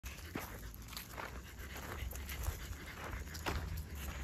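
A small dog on a leash making short sounds as it walks, with footsteps on dry, leaf-strewn ground and a low rumble of wind or handling on the microphone.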